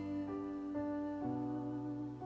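Yamaha CK88 stage keyboard playing slow, held chords, with new notes coming in about every half second.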